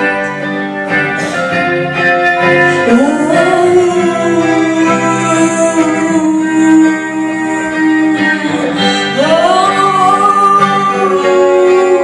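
A woman singing live over a band with electric guitar, holding long notes and sliding up into a new held note about three seconds in and again near nine seconds.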